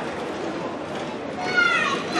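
Background chatter in a sparsely filled football stadium, with one high-pitched shout that falls in pitch about one and a half seconds in.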